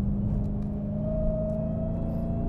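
Dodge Challenger's V8 engine heard from inside the cabin, pulling steadily under load, its pitch rising slowly through the second half.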